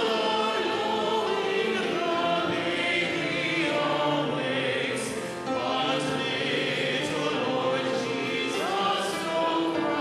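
Church choir and congregation singing a hymn together, the voices holding long notes, with a brief break between phrases about five seconds in.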